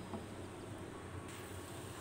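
Mint and sugar syrup simmering in a pan, a faint, steady bubbling sizzle.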